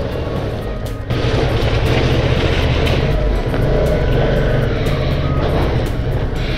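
Suzuki V-Strom 650 XT's V-twin engine running under throttle, bogged down in deep gravel. It gets louder about a second in, with a gritty hiss of gravel as the rear tyre digs in.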